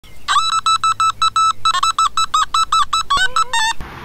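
Rapid electronic bleeps, about seven a second at one steady pitch after a quick rising sweep. Near the end they turn into quicker bleeps that bend and jump in pitch, then cut off suddenly.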